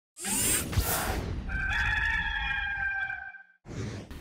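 Rooster crowing once in a long, steady call from the intro sound effect, after a rush of noise in the first second; another short swish comes just before the end.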